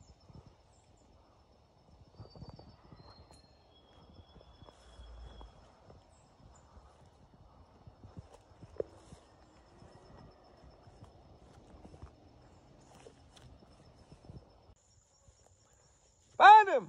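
Faint, uneven footsteps and rustling through grass and brush, with one sharper snap a little before the middle, over a faint steady high tone.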